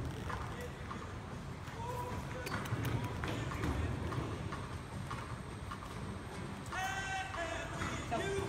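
Horse galloping on soft, deep dirt arena footing: dull, low hoofbeat thuds. A high voice calls out briefly near the end.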